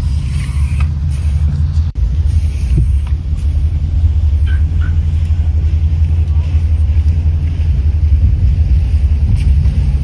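A steady low rumble with faint scattered ticks.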